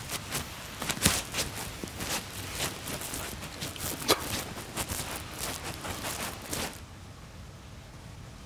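Footsteps: a run of irregular clicks and knocks that stops about seven seconds in, leaving faint room tone.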